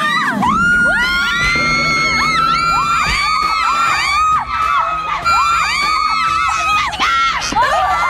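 Several young women screaming and shrieking together in excitement, long high-pitched screams overlapping and rising and falling in pitch, with a brief dip near the end.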